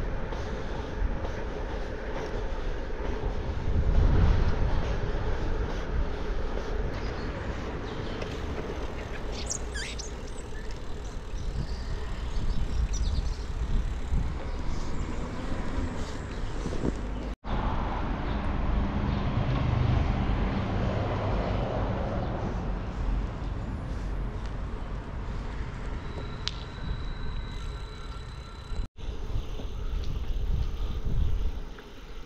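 Wind rushing over the microphone and tyre rumble as a Kona Sutra touring bicycle rolls along tarmac. The sound is a steady, noisy rumble, broken twice by brief dropouts.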